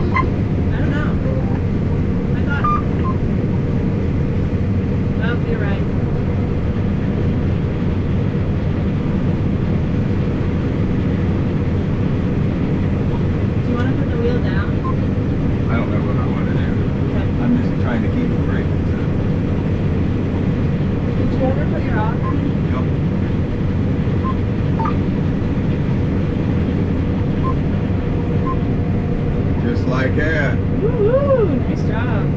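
Combine harvester running steadily while cutting soybeans, heard from inside its cab: a constant low engine and machinery drone that does not change in level.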